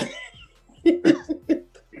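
A man laughing in a quick run of short bursts, starting about a second in.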